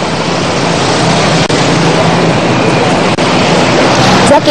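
Steady road traffic noise: a continuous rush of passing vehicles with a low engine hum, picked up by a roadside microphone.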